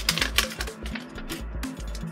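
A candy bar's glued wrapper crackling in quick clicks as it is worked open by hand, over background music with a stepping bass line.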